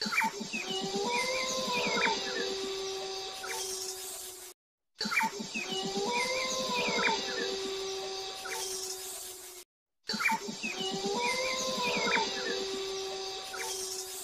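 Animal calls with high bird-like chirps over a steady tone, in a segment of about four and a half seconds that plays three times with short silences between.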